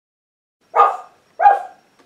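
A dog barking twice, two short sharp barks a little over half a second apart.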